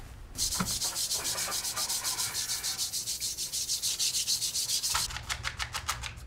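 Brisk, rapid rubbing strokes in a fast even rhythm, starting about half a second in; about a second before the end they change to slower, fuller strokes.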